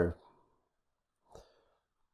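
The end of a man's spoken word dies away, then near silence, broken about one and a half seconds in by one faint short exhale.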